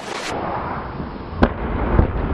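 An uchi mata throw landing: cloth rustling as the partner is lifted, then one sharp slap and thud about one and a half seconds in as his body hits the mat, with low thumping on the mat around it.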